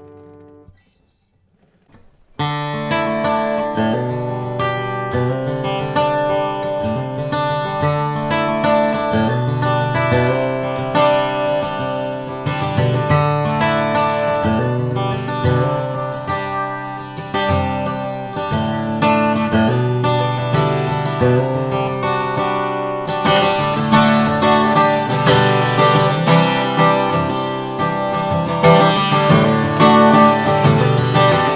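Handmade Gallinaro Aqstica OSH steel-string acoustic guitar, with Bolivian rosewood back and sides and a Sitka spruce top, played with a pick and picked up by a microphone at the soundhole. A chord fades out, then after a short pause continuous picked chord playing starts about two seconds in. Near the end it turns to denser, brighter strumming.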